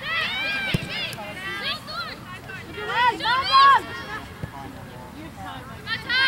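Shouted calls from players and spectators on an outdoor soccer field, loudest near the start and again about three seconds in, over steady open-air noise. Two sharp knocks cut through, one near the start and one about halfway.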